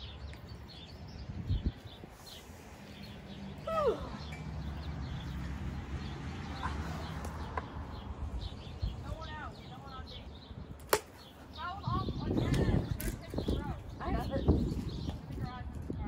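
A plastic wiffle bat hitting a wiffle ball once with a sharp crack, about eleven seconds in, over backyard ambience with birds chirping and a car passing by.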